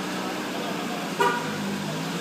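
A car horn gives one short toot about a second in, over a steady hum.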